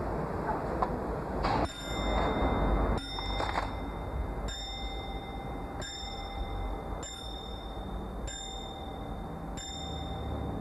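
Hammer of a bare brass clock movement striking the bell mounted on top of it. The bell rings about every 1.3 seconds, seven strikes in all, beginning just under two seconds in after a few handling clicks.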